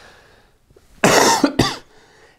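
A person coughs twice about a second in: one loud cough and a shorter one right after.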